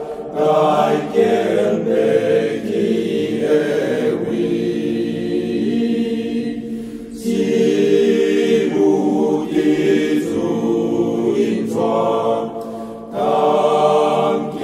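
Voices singing a slow hymn in Taiwanese in long, held notes. The phrase breaks briefly about seven seconds in and again near the end.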